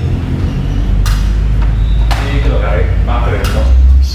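Indistinct voices over a steady low hum, with a few short knocks.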